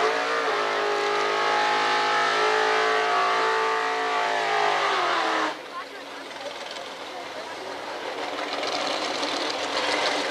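Drag-racing car's engine held at high, steady revs for about five seconds, then the revs drop off. It cuts abruptly to a rougher engine sound that grows louder toward the end.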